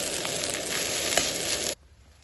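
Kimchi fried rice with pork offal sizzling in a hot black skillet as it is stirred with a metal ladle, with a couple of light clicks from the ladle against the pan. The sizzling stops abruptly near the end.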